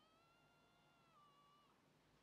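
Faint, high-pitched voice of an anime child character shouting "Hyakkimaru!" as one long held call that drops in pitch near the end; otherwise near silence.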